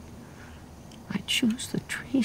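A low steady hum, then from about a second in a woman's breathy, whispery vocal sounds with a few short voiced catches, tearful.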